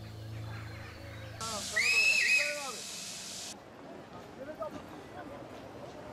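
Train whistle blowing for about two seconds amid a burst of steam hiss, starting about a second and a half in, after a low steady hum fades out.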